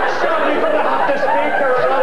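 Studio audience and panel laughing, with overlapping voices chattering underneath.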